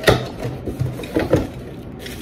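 Hands rummaging in a cardboard box and pulling out a part wrapped in a plastic bag: a sharp knock at the start, then two quick knocks a little over a second in.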